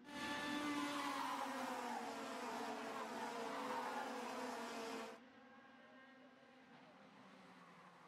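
A pack of IAME X30 two-stroke racing kart engines buzzing at speed, several engine notes gliding up and down in pitch as the karts race past. The sound drops abruptly about five seconds in to a faint distant buzz.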